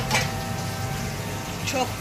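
Steady mechanical hum of commercial kebab-shop kitchen equipment, with a short click right at the start.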